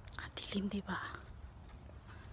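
A person's brief, half-whispered words, about a second long near the start, over a steady low rumble.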